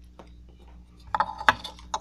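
Small sharp clicks and pops from relighting and puffing a tobacco pipe: one faint click early, then a quick run of clicks and pops in the second half.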